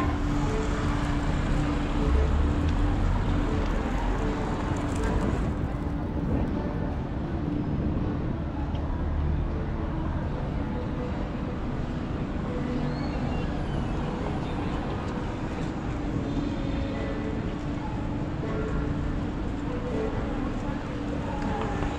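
City street traffic ambience: a steady wash of traffic noise with a low engine rumble that swells about two seconds in and again around eight to ten seconds in, over a faint steady hum.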